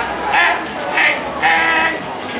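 A raised voice calling out in short, repeated bursts that waver in pitch.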